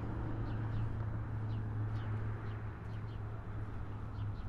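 Birds chirping: short, faint, falling chirps every half second to a second, over a steady low hum.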